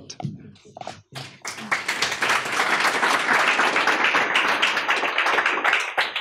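Audience applause. A few scattered claps build into steady clapping from about a second and a half in, then thin out and fade near the end.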